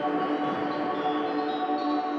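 Ambient electronic music: a sustained synthesizer chord held steady over a soft hiss-like wash. Some of the upper notes change near the end.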